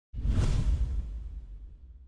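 Whoosh sound effect over a deep low boom, starting suddenly and fading away over about two seconds, as for a logo animation sting.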